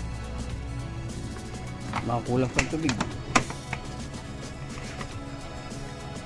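Background music throughout. About two to three seconds in there is a short burst of a voice, with a couple of sharp clicks around the same time.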